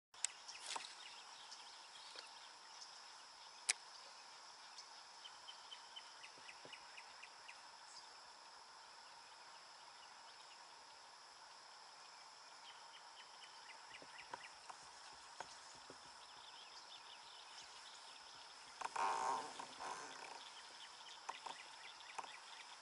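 Fishing reel working a hooked fish: quiet, with scattered clicks and two short runs of rapid ticking from the reel. A louder rush of noise, like a splash, comes a few seconds before the end.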